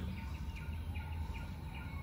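Background sound: a bird chirping faintly and repeatedly, short falling chirps about two a second, over a low steady hum.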